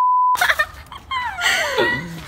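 Steady test-tone beep of the kind played with colour bars, a single unchanging pitch that cuts off suddenly about a third of a second in.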